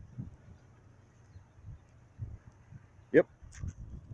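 Faint outdoor background with an uneven low rumble of wind on the microphone, broken near the end by a man briefly saying "yep".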